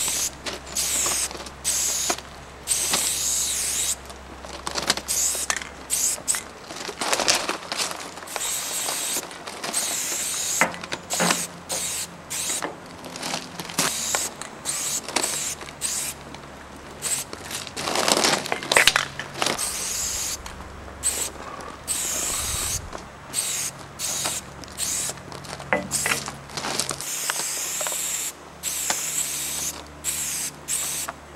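Aerosol spray-paint can with a fat cap hissing in short bursts, starting and stopping many times as each tag's letters are sprayed.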